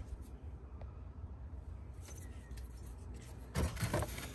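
Faint rustling and light clicks of an arm and hand working into a cramped engine bay among rubber hoses and clips, over a low steady hum, with a louder bump or rub about three and a half seconds in.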